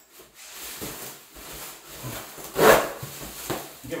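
Thin plastic sheeting (Sherwin-Williams tube plastic) crinkling and rustling as it is pulled off its roll in the dispenser box, with one loud rustle about two and a half seconds in.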